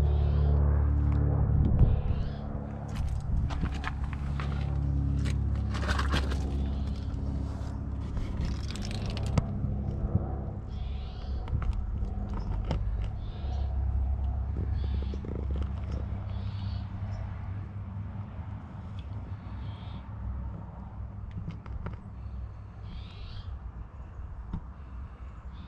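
Crunching footsteps on gravel and scraping and knocking of handling noise as someone crouches down and moves under a pickup, most of it in the first ten seconds, over a steady low hum that fades slowly.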